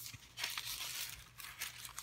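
Paper pages of a handmade junk journal being turned by hand, giving a few soft paper rustles.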